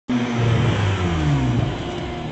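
A car engine running, its pitch sliding down over about a second and a half as it slows.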